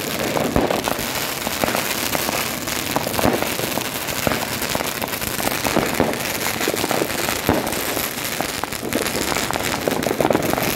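New Year's Eve fireworks going off all around: rockets and firecrackers making a dense, continuous crackle of bangs and pops with no let-up.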